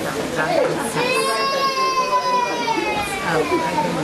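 Chatter of many people in a hall, over which a child's voice cries out in one long high note from about a second in, falling slightly in pitch before it stops near the end.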